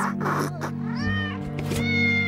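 Cats meowing, three short rising-and-falling meows, over held orchestral chords at the close of a song.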